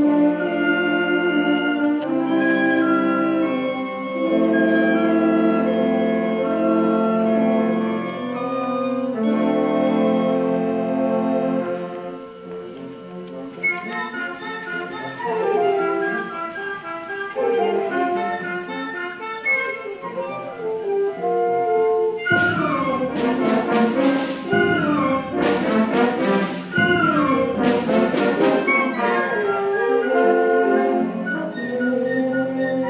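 High school concert band playing live, brass to the fore. Long held chords give way about twelve seconds in to a softer passage with quicker moving lines, and percussion strikes join for the last third.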